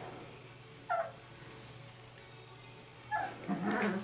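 Rhodesian Ridgeback puppies play-fighting: a short, high yelp about a second in, another near three seconds, then a louder, lower-pitched bout of puppy growling and barking near the end.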